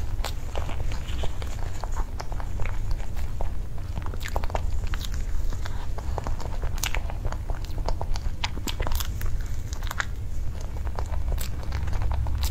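Close-miked mouth sounds of a person eating soft durian cream cake: irregular wet chewing and lip-smacking clicks, over a steady low hum.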